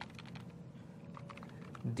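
Computer keyboard typing: a quick, faint run of light keystrokes as a class name is entered.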